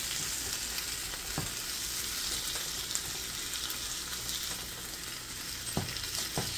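Ginger, onion and tomato sautéing in olive oil in a nonstick frying pan: a steady sizzle, with a spatula stirring and scraping through the vegetables and knocking against the pan a couple of times.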